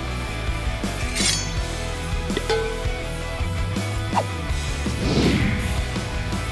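Background music with a steady bass line, overlaid with a few short clinking and hitting sound effects and a falling swish near the end.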